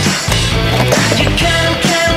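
Rock music with a steady beat over a skateboard rolling on concrete.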